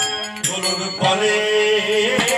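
Devotional kirtan music: singing with a harmonium, a note held steady through the second half, and only a couple of percussion strikes.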